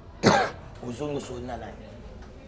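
A man coughs once, loudly, about a quarter second in, followed by quieter speech.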